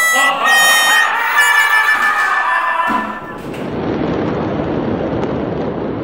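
A high, reedy pitched sound with many overtones, then an abrupt cut a few seconds in to a steady rushing rumble from explosion footage, recorded at lower quality.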